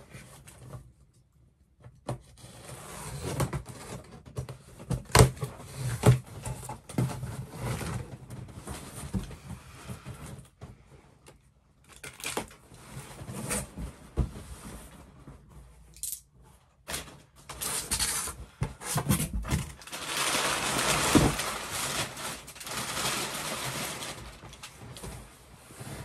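Large cardboard shipping box being opened by hand: irregular scraping and tearing with sharp knocks as the flaps are worked open, then a longer stretch of rustling as the brown packing paper inside is handled.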